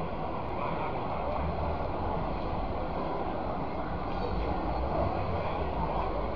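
Steady outdoor background of distant crowd chatter over a low rumble, with wind on the microphone.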